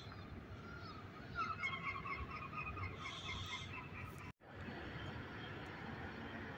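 A bird calls in a quick run of repeated notes for about a second and a half, starting over a second in, with a shorter higher call just after, over a low steady outdoor background. The sound cuts out for an instant about two-thirds of the way through.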